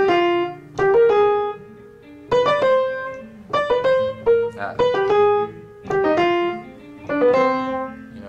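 Piano playing about six short right-hand phrases of a few quick notes, each settling on a held note, over sustained low chords. These are surround-tone figures that approach chord tones from above and below.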